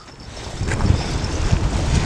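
Wind buffeting the microphone in a low rumble, growing stronger in the first moments, over choppy lake water lapping at a rocky shore.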